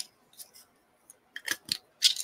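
A few light, sharp clicks and taps of small tools being handled on a work table, clustered about a second and a half in, with quiet between.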